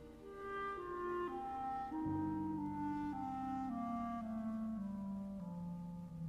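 Chamber music for B-flat clarinet, string quartet and piano, with the clarinet prominent: a slow line of separate held notes, joined about two seconds in by a louder low line that steps downward note by note.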